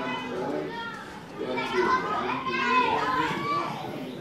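Several children's high-pitched voices talking and calling out at once, loudest in the middle.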